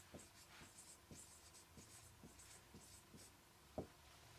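Faint scratching and squeaking of a marker pen writing words on a whiteboard, in short repeated strokes, with one sharper tap near the end.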